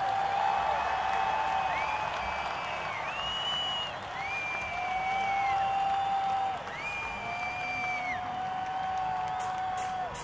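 Rock concert audience cheering between songs, with a series of long, steady whistles held for a second or two each over the crowd noise.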